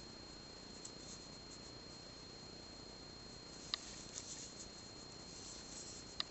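Faint scratchy rustle of yarn being worked with a crochet hook through single crochet stitches, with one small sharp click a little past halfway.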